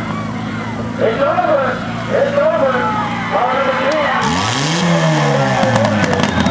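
Demolition derby cars' engines running at idle under loud shouting voices; about four seconds in, one engine revs up and drops back down.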